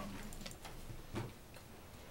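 A few light clicks on a laptop as a spreadsheet is brought up, with a man's brief "um" about a second in.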